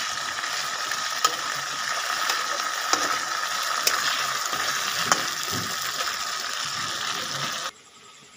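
Chicken pieces and onion sizzling in hot oil in a wok, with a spatula stirring and knocking against the pan in several sharp clicks. The sizzle cuts off abruptly near the end.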